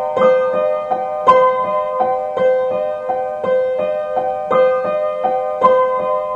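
Old, out-of-tune piano with a cracked soundboard playing a waltz: evenly spaced notes about three a second, with a stronger accented note roughly once a second, over a repeating held middle tone.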